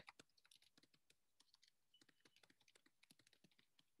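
Very faint typing on a computer keyboard: a rapid, irregular run of key clicks as a line of text is typed.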